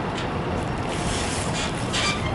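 Steady city street traffic noise with a low rumble, no single event standing out.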